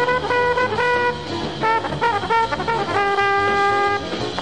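1950s small-group jazz record with a trombone playing a phrase of short notes over a walking bass, then holding one long note near the end.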